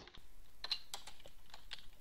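Typing on a computer keyboard: a run of separate key presses at an uneven pace.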